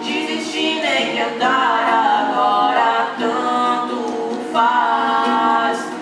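A man and a woman singing a Portuguese-language song together in harmony, with acoustic guitar accompaniment beneath the voices.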